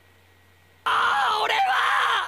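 An anime character shouting "I've had enough!" in Japanese: a loud, strained yell that breaks in about a second in after a near-silent pause.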